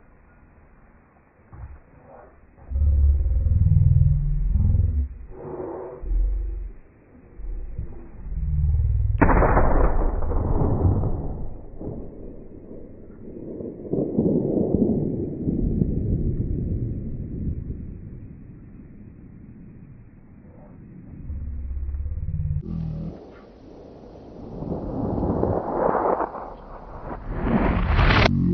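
Gusty wind buffeting the camera microphone. About nine seconds in comes one sudden loud report that rings out and dies away over a couple of seconds: a rifle shot echoing across the canyon.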